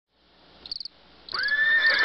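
Crickets chirping in short, rapid trills that repeat about every half second, fading in. A louder, held, pitched animal call joins just over a second in.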